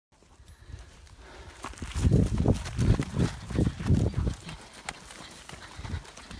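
Running footsteps thudding on dry ground, about three a second for a couple of seconds, then easing off. A man says "yeah" over them.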